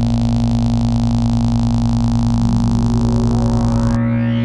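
Dark ambient synthesizer music: a steady low drone over a pulsing bass, with a loud hiss of noise layered on top that cuts off suddenly at the end. About halfway through, a tone starts sweeping upward in pitch.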